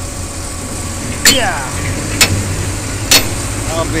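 Three sharp metallic bangs about a second apart, the first ringing briefly, as the jammed tailgate latch of a coal tipper truck is struck to force it open. The truck's diesel engine idles steadily underneath.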